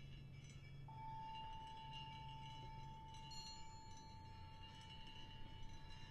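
Brake drums struck softly and left ringing, with bright metallic chime-like tones that overlap and fade. About a second in, a long steady high note enters and is held.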